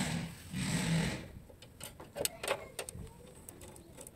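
Metal parts rattling and grating for about a second as a motorcycle rear shock absorber's mounting eye is worked onto its bolt, followed by a few light metal clicks as a socket wrench is fitted onto the nut.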